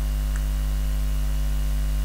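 Steady, low electrical mains hum picked up in the recording, unchanging in level, with no speech over it.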